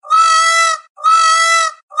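Peacock calling: a loud, high, even-pitched call, each just under a second long, repeated about once a second. Two full calls, with a third starting at the very end.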